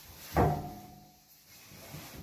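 A sudden thump about half a second in, with a short ringing tail, followed by softer movement sounds.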